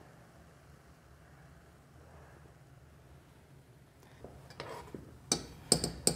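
Quiet room with a faint steady low hum, then near the end a couple of sharp knocks of a metal spoon against a stainless steel cooking pot as the soup is stirred.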